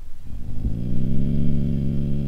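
Dog growling, long, low and steady, starting just after the beginning, at a cat it has spotted outside the car.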